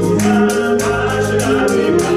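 Live gospel song: singing with instrumental backing and hand clapping in a steady rhythm.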